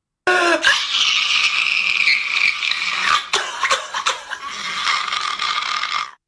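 Soundtrack of an animated cartoon clip: a brief high, voice-like cry at the start, then a dense rasping, hissing noise with a faint steady tone under it, cutting off at the end.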